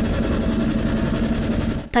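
Steady aircraft engine and cabin noise: a low rumble with a faint steady hum, cutting off just before the end.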